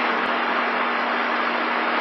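Steady background room noise: an even hiss with a constant low hum underneath, unchanging throughout.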